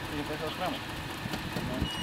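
SUV engine idling steadily, with a few faint words of speech over it.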